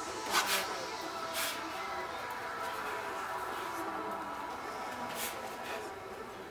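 Several quick swishes of a sword cutting through the air: a pair about half a second in, one more a second later, and another near the end, over a steady background of music and room murmur.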